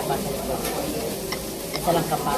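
Samgyeopsal (sliced pork belly) sizzling steadily on a grill, with a few light clicks.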